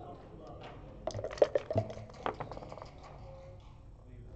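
Backgammon checkers and dice clacking on a wooden board: a quick flurry of clicks about a second in, then one sharper clack a little after two seconds.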